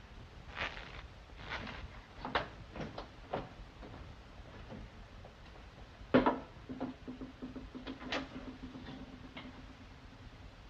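Scattered knocks and bumps, then one loud sharp thump about six seconds in, followed by a steady low hum.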